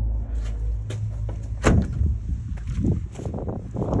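A series of knocks, rattles and scrapes, the loudest a sharp knock about one and a half seconds in, over a low rumble during the first second.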